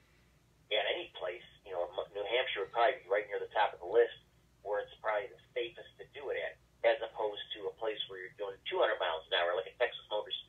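Speech only: a man talking steadily, his voice thin and narrow like audio over a telephone line.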